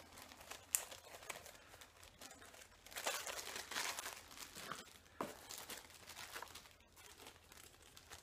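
Plastic zip-lock bags crinkling faintly as they are handled and rummaged through, with a few sharp clicks; the rustling is densest about three to four and a half seconds in.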